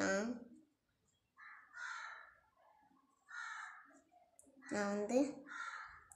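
A crow cawing in the background: two harsh caws about two seconds apart, with a third near the end.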